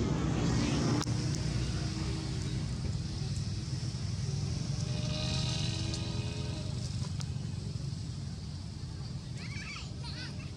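A steady low engine rumble from a motor vehicle. About halfway through, a humming engine note swells and fades as a vehicle passes. Near the end come a few high, wavering chirps.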